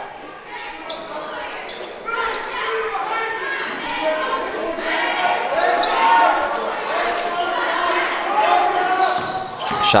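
A basketball being dribbled on a hardwood gym floor amid a steady mix of crowd chatter and shouting voices, echoing in a large gymnasium.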